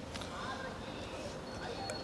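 Faint background noise of a crowd gathered outdoors, with low, indistinct voices and a couple of small clicks.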